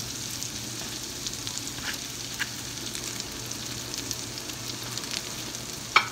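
Broccoli florets sizzling in melted butter and garlic in a frying pan: a steady frying hiss with fine crackling and a few sharper pops.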